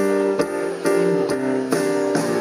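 Amplified live band playing an instrumental intro: guitar and keyboard chords struck in an even pulse, a little over two a second, with light percussion, no singing yet.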